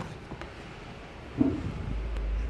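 A stiff paper shopping bag being handled and tipped, with one sharp knock about one and a half seconds in and rumbling handling noise on the microphone.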